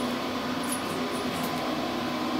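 Steady low hum of room background, with a few faint light ticks as the metal end nut of a shower hose is handled.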